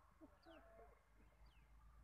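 Faint bird calls: short, high, falling chirps about once a second.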